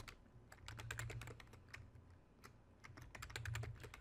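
Faint computer keyboard typing: quick runs of keystrokes, with a thinner stretch in the middle before a second run.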